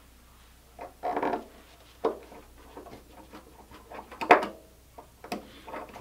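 Tools and small parts being handled on a wooden workbench: a brief rustle, then a few scattered clicks and knocks, the sharpest about four seconds in.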